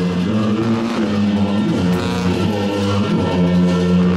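Tibetan Buddhist ritual music: loud, sustained low tones that shift in pitch every second or so.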